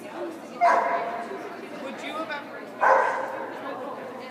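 A dog barking twice, two loud short barks about two seconds apart.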